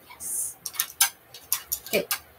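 Paintbrushes and painting tools being handled on a hard surface: a short hiss, then a quick irregular series of light clicks and taps.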